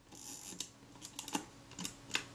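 Faint, scattered light clicks and a soft rustle from a Kodak Retina IIa folding camera being handled, a thumb pressing on the controls of its top plate.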